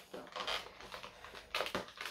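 Fingernails picking and scratching at the perforated door of a cardboard advent calendar box, trying to prise it open without a tool: faint scratching and small clicks, with a sharper click a little over a second and a half in.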